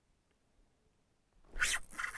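Near quiet, then about one and a half seconds in a sudden short swish as an ice-fishing rod is swept up to set the hook.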